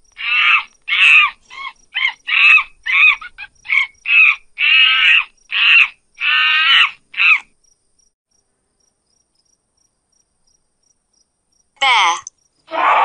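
Monkey calling: a rapid series of about a dozen short, high-pitched calls over the first seven seconds or so, then silence until another brief sound starts right at the end.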